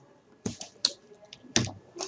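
A few scattered, sharp clicks from computer mouse and keyboard use, about four in two seconds, the loudest about one and a half seconds in.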